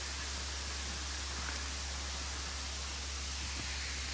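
Steady, even rush of a waterfall running heavily after a lot of recent rain.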